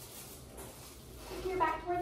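Quiet room tone with a low steady hum, then a person's voice speaking briefly near the end.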